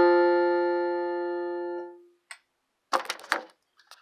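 The song's last chord on its backing instrument rings out and fades, then stops abruptly about two seconds in. A small click follows, then a brief burst of knocking and rustling as the camera is handled.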